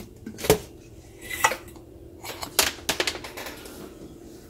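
Handling noise: several scattered sharp clicks and light knocks close to the microphone as the camera is picked up and moved. The strongest click comes about half a second in.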